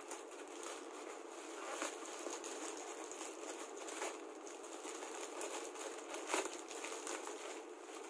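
Plastic courier mailer pouch crinkling and crackling as it is pulled, bitten and torn open by hand, a run of short sharp crackles with a louder one about six seconds in.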